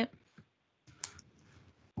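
A few faint, sharp clicks in a quiet pause, the clearest about a second in.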